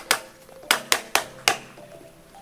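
Hammer tapping a PVC fitting onto a PVC pipe: five sharp knocks in about a second and a half.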